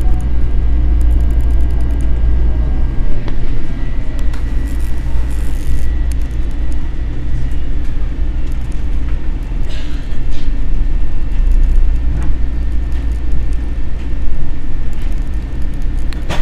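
Metro-North M7 electric multiple-unit train running, heard from inside the passenger car: a loud, steady low rumble with a faint high tone over it. A faint whine falls in pitch over the first few seconds, and a few sharp knocks come through now and then.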